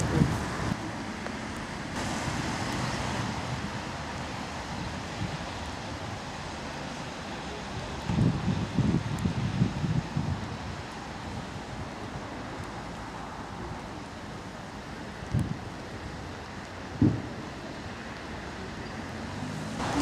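Steady outdoor noise of wind on the microphone and road traffic, with gusty low rumbles about eight seconds in and two short thumps near the end.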